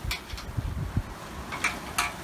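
Wind buffeting the microphone aboard a sailing yacht under sail, with sea water splashing against the hull twice, once near the start and again near the end.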